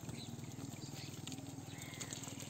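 A chorus of frogs calling in a flooded rice paddy, a steady, fast, even pulsing with a few fainter calls over it.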